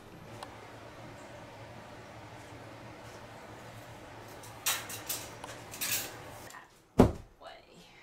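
Handling noises over a low steady hum: a few brief rustles, then a single sharp thump about seven seconds in.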